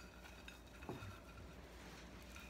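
Near silence: faint low room hum, with one soft tick about a second in.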